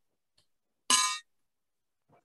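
A single short bell ding about a second in, dying away quickly: a timekeeper's bell struck once to signal the start of a debater's speaking time.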